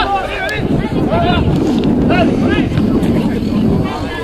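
Several people shouting in short, pitched calls, over steady wind rumble on the microphone.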